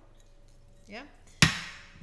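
A single sharp knock about one and a half seconds in, dying away quickly: a metal spray bottle being put down on a hard surface.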